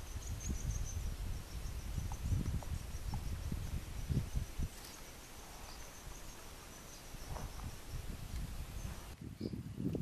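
Steady high-pitched insect chirring with low, irregular rumbling beneath it; the chirring cuts off suddenly about nine seconds in.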